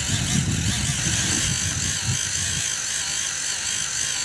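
Small electric fuel pump on a gas can running steadily as it pumps gasoline into a model UAV's fuel tanks, with a low rumble during the first couple of seconds.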